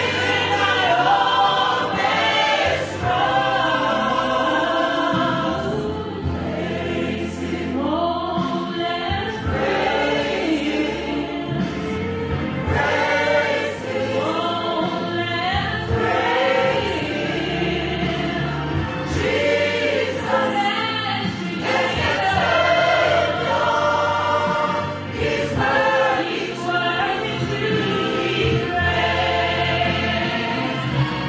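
Church choir, mostly women's voices, singing a gospel hymn together without a break.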